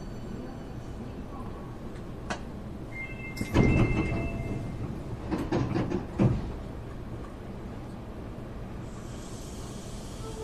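Hankyu 8300-series commuter car standing at a station with a steady low rumble, its passenger doors sliding open: a short two-note chime, then loud sudden door noise about three and a half seconds in and again between five and six seconds in. A brief hiss comes near the end.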